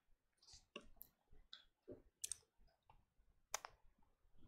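Near silence broken by a scatter of faint, short clicks, the clearest a close pair a little past two seconds in and another about three and a half seconds in.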